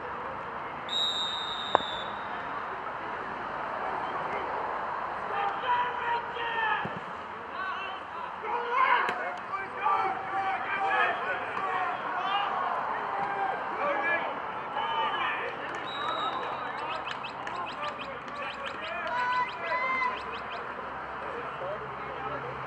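Voices shouting and calling across an outdoor gridiron field. About a second in comes a short, high referee's whistle, then a single sharp thump as the kicker's boot strikes the football for the kickoff. Another short whistle sounds later, while the shouting carries on through the play.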